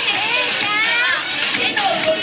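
Children's voices calling out, high and rising in pitch, over show music.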